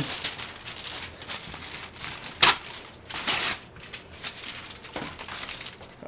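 Heavy-duty aluminium foil crinkling and rustling as it is handled and folded around a box, with one sharper, louder crackle about two and a half seconds in.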